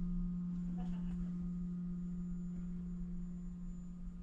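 Steady low electrical hum, a single tone with a fainter overtone above it, from the switched-on systems of a parked battery-electric coach, heard inside the cabin; a couple of faint clicks about a second in.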